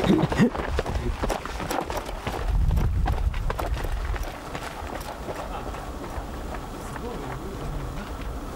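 Running footsteps of trail runners on a dirt mountain path, quick short steps passing close by through the first few seconds, with a low rumble around the third second. The steps then fade into a quieter, steady outdoor background.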